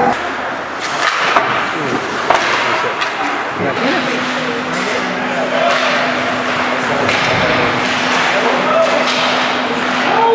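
Ice hockey game sound in a rink: a few sharp knocks of sticks, puck or boards over a steady hiss of skating and arena noise, with spectators' voices in the background. A steady low hum joins about four seconds in.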